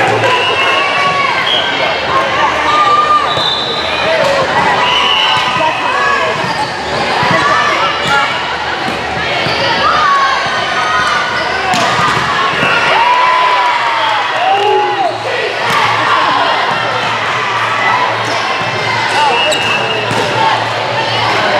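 Volleyball rally in a large gym: the ball being struck and bouncing now and then, over a constant echoing hubbub of players' and spectators' voices.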